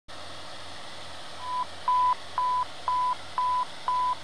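Fire dispatch radio alert tone: six short beeps at one steady pitch, about two a second, starting about a second and a half in, over a steady radio hiss and hum.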